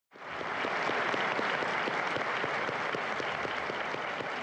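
Audience applauding: dense, steady clapping from a large room of people, cutting in abruptly at the start.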